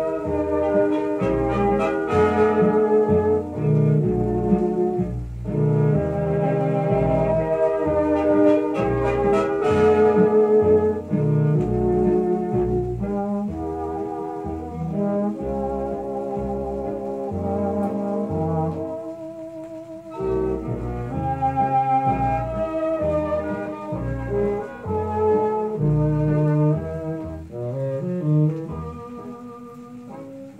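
A 1930s dance band with brass playing a 1936 hit, reproduced from a 78 rpm HMV shellac record on a radiogram.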